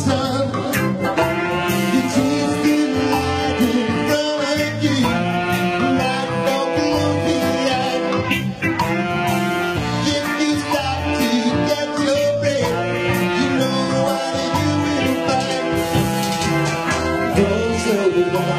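Live band playing a song through amplification: guitar-led music over a steady beat.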